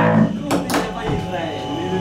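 Amplified electric guitar on a live stage: two sharp strummed hits about half a second in, then a chord left ringing, with voices in the room.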